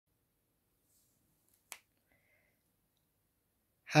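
A single sharp click a little before halfway, in otherwise near silence; a voice starts right at the end.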